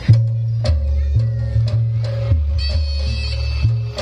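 Jaranan (kuda lumping) accompaniment music: repeated drum strikes over a steady low bass line that shifts pitch every half-second or so. A high held melody joins about two-thirds of the way in.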